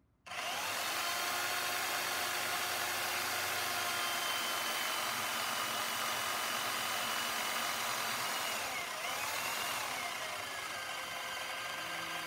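Portable bandsaw motor running while its blade cuts through a round billet of 6061 aluminum. A steady whine with several held tones starts just after the beginning, and its pitch dips and recovers about nine seconds in.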